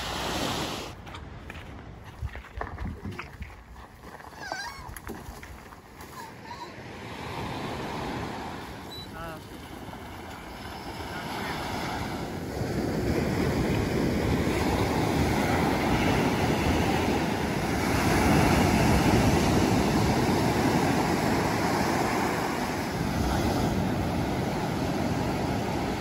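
Ocean surf washing onto a sandy beach, with wind on the microphone; the wash grows louder and fuller about halfway through.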